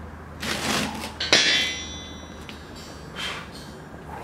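A steel suspension coil spring from a Jeep lift kit being lifted out and set down on a concrete floor: a handling rustle, then about a second and a quarter in a sharp metallic clang that rings briefly. A softer rustle follows near the end.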